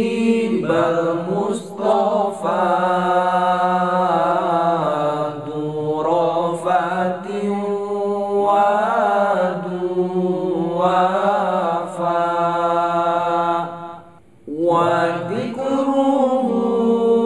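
A group of male voices singing an Arabic sholawat (qasidah) a cappella, with long, ornamented melodic lines over a held low note. The singing breaks off briefly near the end, then starts again.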